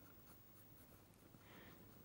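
Near silence, with the faint scratch of a white pencil drawing on black paper.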